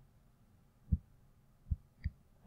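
Two short, soft, low clicks of a computer mouse, about a second in and near the end, with faint room hum between them.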